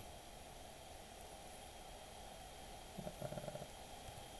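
Quiet, steady background hiss and hum from a voice-chat microphone during a pause in talk, with a brief spoken 'uh' near the end.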